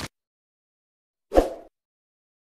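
A single short pop sound effect from an animated intro, about a second and a half in, between stretches of complete silence.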